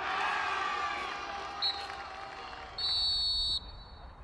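Soccer players shouting in celebration just after a goal. About a second and a half in, a referee's whistle gives a short peep, then near the end one steady blast of under a second.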